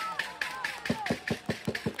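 Football supporters shouting "come on" over rhythmic clapping. In the second half comes a quick run of short, sharp knocks, about seven a second.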